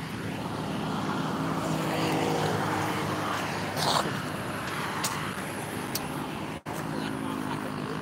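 A motor vehicle engine running steadily, swelling slightly a couple of seconds in and then easing off, with a couple of light clicks and a brief cut-out in the sound near the end.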